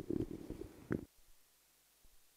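Muffled low rumbling and bumps of a handheld microphone being handled, ending in a sharp click about a second in, after which the sound cuts out abruptly to near silence.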